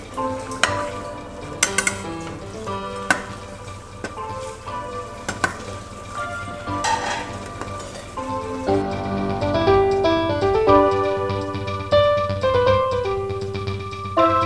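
A metal spoon clinking and scraping against a stainless steel pot and a plate as fish is stirred into a simmering soup, with background music. About nine seconds in the clinks stop and louder keyboard music takes over.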